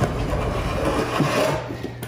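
A big floor scraper drawn across an OSB wood subfloor, spreading a thick scratch coat of epoxy patching paste: steady scraping that fades out about a second and a half in.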